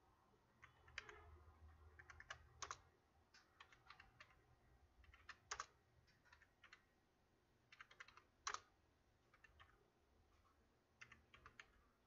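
Faint computer keyboard typing in short runs of keystrokes, each run ending in a louder single key strike, as numbers are entered into spreadsheet cells one after another.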